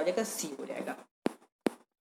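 A man speaking briefly in Hindi, then two short, sharp clicks about half a second apart.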